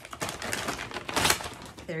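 Paper packaging being handled and opened by hand: irregular crinkling and rustling with small clicks, and a louder rustle about a second in.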